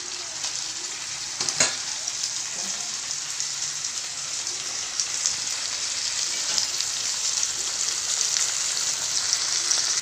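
Chicken pieces and chopped onions sizzling in oil in a frying pan, the sizzle growing gradually louder. A single sharp knock about one and a half seconds in.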